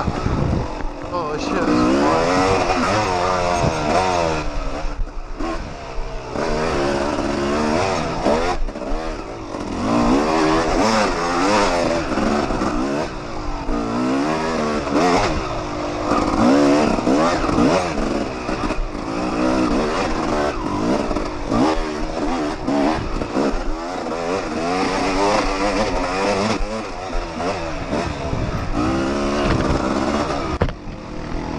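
Yamaha YZ250 two-stroke dirt bike engine, close up, revving up and falling back over and over, every second or two, as it is ridden hard along a trail.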